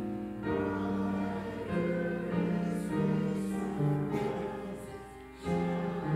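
Congregation singing a hymn together with piano accompaniment, in long held notes; the sound drops briefly about five and a half seconds in, a pause between phrases, then the singing resumes.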